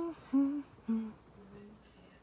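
A woman humming a short phrase of four notes that step down in pitch, the last one softer and held a little longer.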